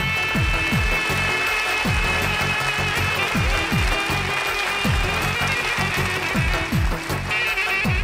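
Balkan folk dance music played back at a lively tempo, with saxophones carrying the melody over keyboard and a steady electronic drum beat.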